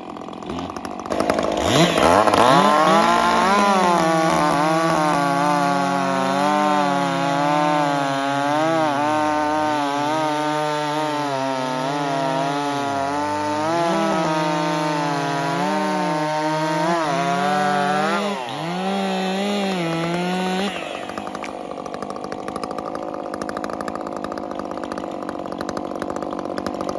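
Two chainsaws, a stock Stihl MS 400 C and a ported Echo 590 with a hammerhead pipe, idling, then pinned wide open about a second in and cutting through a large log together, their pitch dipping and recovering as the chains load up in the wood. Near the end of the cuts the sound changes, and at about two-thirds of the way through both drop back to idle.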